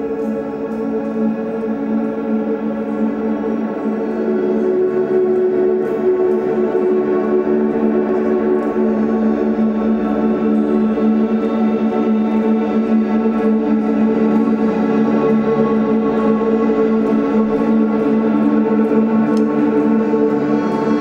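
Ambient guitar drone: two electric guitars played through effects pedals, layered sustained notes with no percussion, swelling over the first few seconds and then holding steady.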